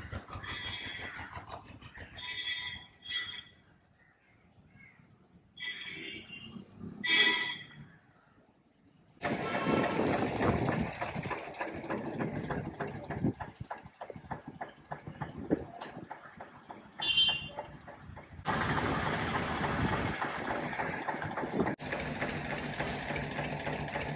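A few short bird calls, then from about nine seconds in, steady outdoor street noise with vehicle engines running.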